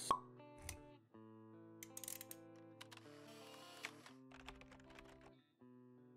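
Short, quiet electronic logo jingle: a sharp pop right at the start, then soft held tones with a few light clicks.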